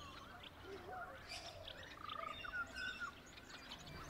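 Faint outdoor ambience with birds chirping now and then in the background.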